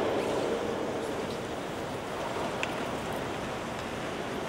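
Even background hiss of a large, reverberant church. A spoken prayer fades away in the echo over the first second, and there is one faint click about two and a half seconds in.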